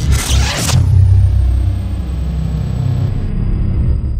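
Logo-intro sound effects: a short whoosh, then a loud, sustained deep bass rumble with a thin high tone sliding slowly down in pitch.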